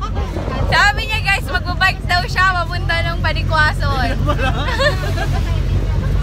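Passengers laughing and talking excitedly over the steady low drone of a jeepney's engine and road noise in motion.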